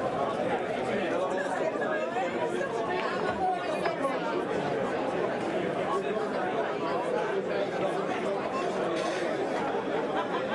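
Steady, indistinct chatter of many people talking at once among the spectators around a pool table, with no single voice standing out.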